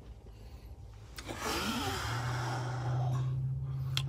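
A man's long, breathy exhale, starting a little over a second in, over a low steady hum.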